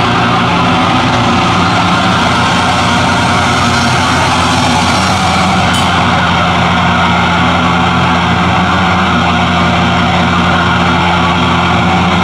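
A loud, steady drone of heavily distorted amplified guitar and bass, held low notes sustained as a wall of noise with the drums silent.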